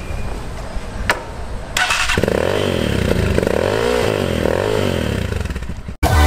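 A dirt bike's engine is revved repeatedly from about two seconds in, its pitch rising and falling several times. Before that there is a low rumble and a single click about a second in.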